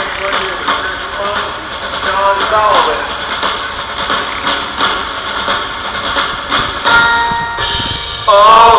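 Indistinct talking that no words can be made out of, over outdoor background noise and scattered clicks. A steady held tone comes in about seven seconds in.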